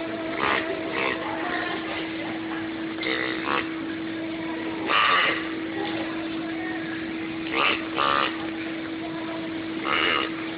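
A steady low electrical hum with short bursts of a person's voice several times over it, the loudest about halfway through.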